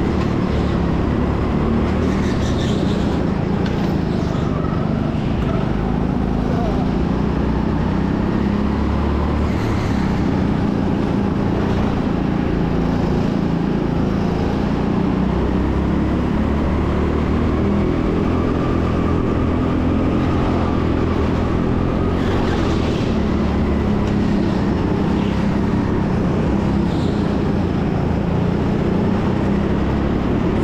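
Go-kart at race pace heard from the driver's seat: its drive note runs steadily, rising and falling slightly in pitch through the corners, over a haze of tyre and wind noise.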